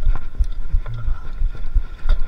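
Irregular low thumps and rumble, about three or four a second, from a mountain bike and its camera being jolted over a rough, rutted dirt trail at slow climbing speed, with a faint steady whine above.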